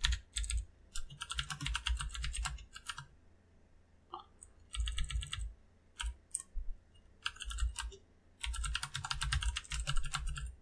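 Computer keyboard typing: several bursts of quick keystrokes with short pauses between them.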